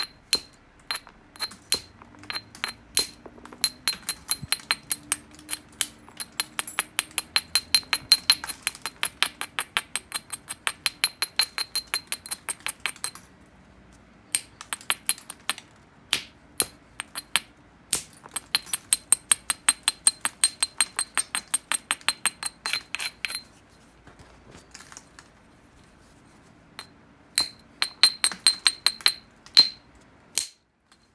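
Abrading stone rubbed quickly back and forth along the edge of an obsidian biface, making a fast run of sharp, glassy scratching clicks, several a second. It comes in long runs broken by two short pauses. This is edge grinding to prepare the striking platforms.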